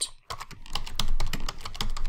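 Computer keyboard typing: a quick, uneven run of key clicks.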